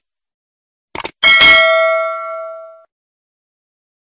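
A quick double click, then a bell struck once, ringing with several pitches at once and fading away over about a second and a half.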